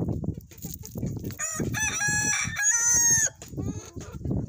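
A desi rooster crows once, a long held call with a short break in it, from about a second and a half in to past three seconds. Under it, a flock of hens clucks and pecks at feed on gravel with irregular low knocks.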